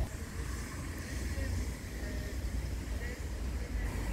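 Steady low rumble of wind on the microphone outdoors, with a faint even background hiss.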